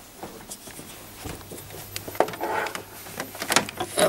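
Faint handling noises from a small plastic HDMI adapter and its cable being carried and fumbled at the back of a TV: scattered soft clicks and knocks, with a few sharper clicks near the end.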